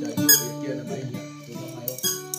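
Acoustic guitar being played by hand, its notes ringing and fading, with a brief sharp high squeak about a third of a second in.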